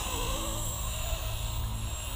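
Blade 230S V2 electric RC helicopter in flight: a steady hum of its main rotor and motor with a faint high whine above it.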